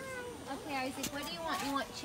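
Indistinct voices, among them a high-pitched child's voice that rises and falls in pitch.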